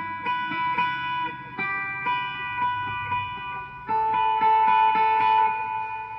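Electric guitar picking notes on two strings and letting them ring, comparing intervals of the major scale. The notes change about three times, and the loudest note starts about four seconds in.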